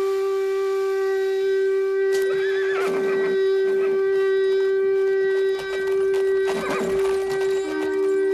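A long horn blast held on one steady note, dropping to a lower note near the end, with horse whinnies over it twice, like the opening signal of a battle.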